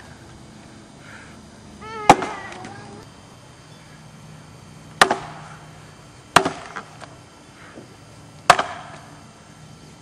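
Chopping axe biting into an upright standing block of wood, four heavy strikes spaced one and a half to three seconds apart, each a sharp crack with a short ring after it.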